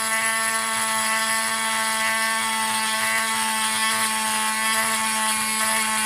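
Dremel Micro cordless rotary tool fitted with a 7103 diamond wheel point, running at a steady speed while it etches a wine glass: an even, unchanging motor whine.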